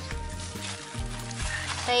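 Background music with a steady bass line, under a faint hiss.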